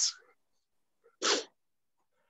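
A single short, sharp burst of a person's breath or voice, about a second in, lasting a fraction of a second.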